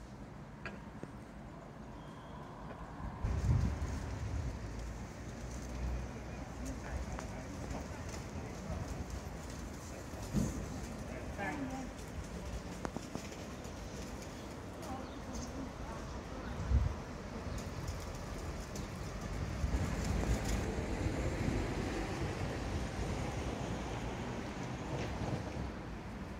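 Quiet outdoor town-square ambience: a low background with a few short low rumbles and faint, indistinct voices of passers-by.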